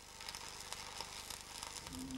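Faint, steady crackle and sizzle of an electric arc welder laying a weld on structural steel.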